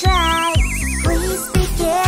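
Bouncy children's song backing music with a steady beat. Over it, a warbling whistle-like tone slides steadily down in pitch for about a second and a half: a cartoon falling sound effect as the baby topples over.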